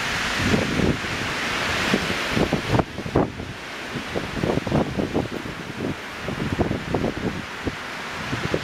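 Storm wind rushing through conifer treetops, with gusts buffeting the microphone irregularly. The rush in the treetops is strongest for about the first three seconds, then eases while the buffeting goes on.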